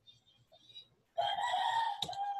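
A rooster crowing in the background: one long, steady call that starts just over a second in.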